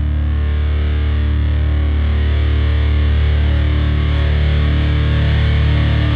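Heavily distorted electric guitar holding a long, low droning chord that slowly grows louder, with no drum hits, typical of sludge metal.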